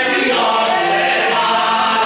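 Small mixed group of men's and a woman's voices singing a folk song together in chorus, with piano-accordion accompaniment holding steady chords.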